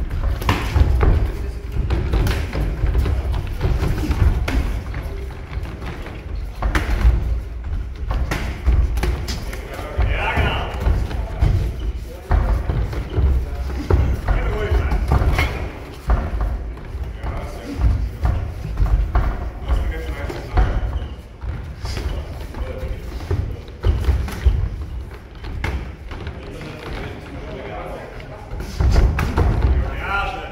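Repeated dull thuds of bare feet on foam cage mats, gloved strikes and bodies meeting the cage fence as two mixed martial arts fighters exchange and clinch, with voices calling out at times.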